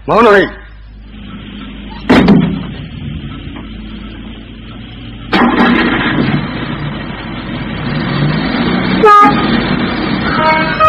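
Sound effects in an old cassette radio drama: a few words of speech at the start, then a sudden heavy thud about two seconds in. From about five seconds in, a steady vehicle-like running noise plays, with a short pitched horn-like blast near the end.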